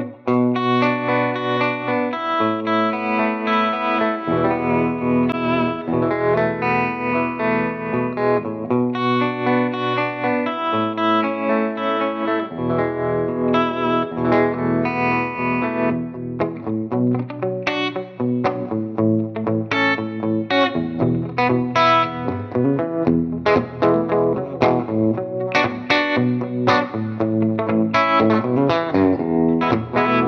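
Electric guitar with Tone Specific 1958 Twang PAF humbucker pickups, played through a tube amp with a little overdrive. Ringing chords are held for a couple of seconds each through the first half, then quicker picked notes and short chord stabs take over about halfway in.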